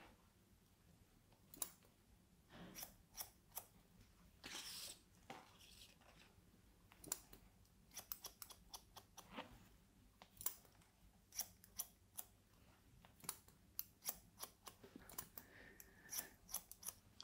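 Barber's scissors cutting sections of wet hair: a string of short, faint snips at irregular spacing.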